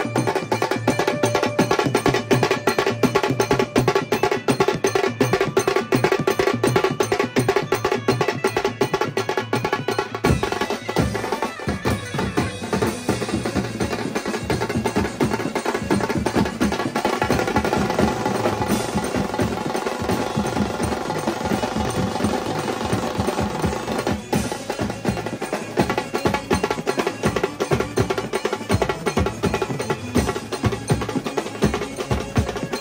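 A large drum troupe playing a fast, dense rhythm together on many stick-struck drums, including snare drums and big tom-like drums, with a cymbal. The playing breaks off briefly about ten seconds in and dips again near the 24-second mark.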